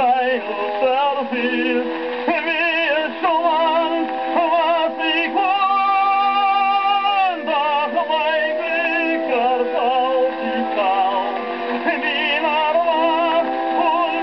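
An old shellac record of an operatic tenor aria with orchestra playing on an acoustic horn gramophone: a tenor sings with wide vibrato, with one long held note about halfway through. The sound is thin and boxy, with no deep bass and no top.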